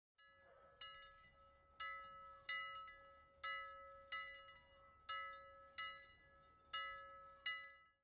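A bell-like chime struck about ten times in pairs, each note ringing out and fading, over a faint steady held tone.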